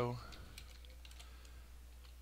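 Faint computer keyboard keystrokes and clicks over a low steady hum, as code is pasted and edited. A spoken word trails off right at the start.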